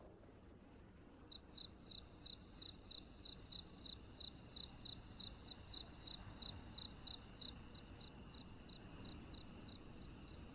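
Cricket chirping, faint and evenly paced at about three chirps a second, starting about a second in and growing weaker in the last few seconds, over a steady high insect trill.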